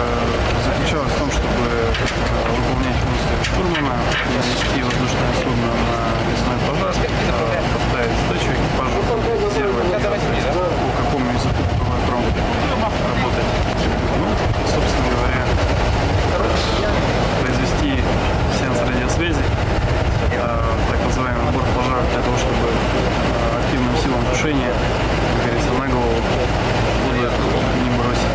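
A man speaking over loud, steady aircraft engine noise that runs without a break and masks much of his voice.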